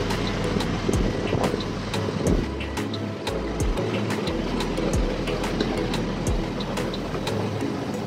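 Steady drone of aircraft and apron machinery at an airliner's boarding door, with repeated footsteps on the jet bridge floor.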